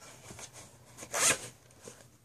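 VHS tape cases being handled: a short scraping swish of plastic sliding just over a second in, with a few small knocks around it.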